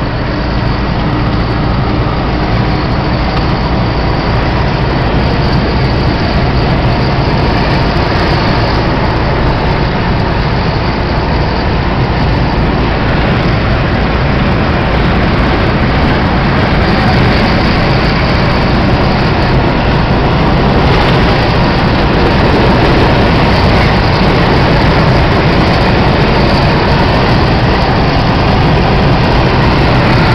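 Steady road noise inside a vehicle cruising at highway speed: tyre and wind rush with a low hum underneath, loud and unbroken.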